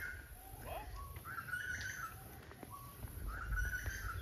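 Birds calling several times in short pitched phrases, over a low rumble.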